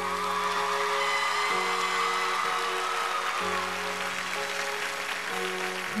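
Slow instrumental introduction to a ballad: sustained keyboard chords that change about every two seconds, with audience applause underneath.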